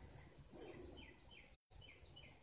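Near silence: faint room tone with a few short, faint falling chirps of a bird, and a brief cut-out of all sound just past halfway.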